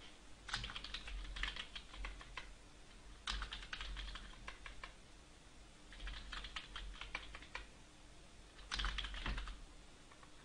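Computer keyboard being typed in four short bursts of quick keystrokes, one word per burst, with pauses of about a second between the bursts.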